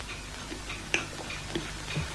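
Light ticking, roughly two ticks a second, over a steady low hum.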